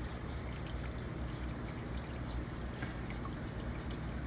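Aquarium water trickling steadily, with a few faint drips.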